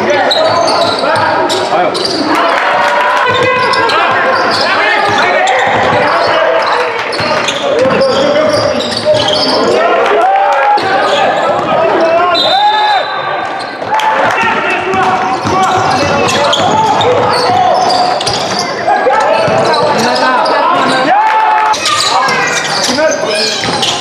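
Basketball game in a large sports hall: overlapping shouts and chatter from players and spectators, with a basketball bouncing on the court. A brief high-pitched tone sounds about halfway through.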